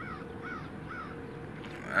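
A bird calling three times in quick succession, faint, each call rising and falling in pitch, over a steady background hum.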